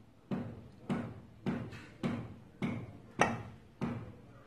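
Serving spoon tapped repeatedly against the dish to shake off the last of the batter: seven evenly spaced knocks, about one every 0.6 s, each ringing briefly.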